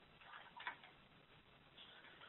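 A few faint clicks of a computer mouse about half a second in, over a near-silent, narrow-band web-conference line.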